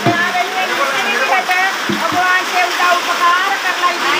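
A woman's high-pitched voice chanting rapidly in quick rising and falling phrases over a steady noisy hiss, with two low thumps, one at the start and one about two seconds in.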